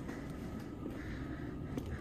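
Steady rushing noise of a propane construction heater running, with a couple of faint knocks from footsteps on the scaffold planks.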